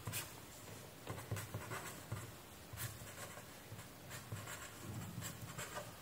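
Ballpoint pen scratching on paper in a run of short, irregular strokes as lines are drawn and small labels are written.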